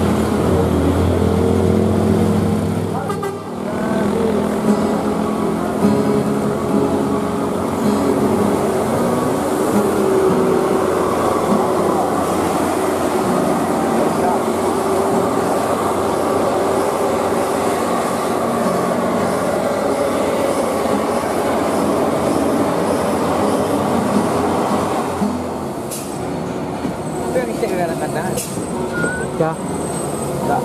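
Heavy diesel truck and bus engines labouring up a steep hairpin climb, a low engine drone loudest in the first few seconds, followed by a steady mix of traffic noise.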